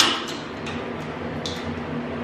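A door latch and lock clicking sharply as the door is shut and locked, then a few faint ticks.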